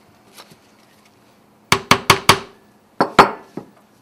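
Sharp hard knocks and clacks of dissecting tools handled against a wooden board: four in quick succession a little under two seconds in, then two more about a second later and a fainter one after.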